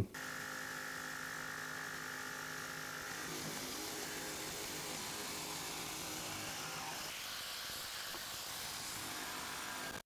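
Jigsaw running steadily as it cuts along a traced curve in a board, heard faintly. Its pitch shifts slightly about three seconds in.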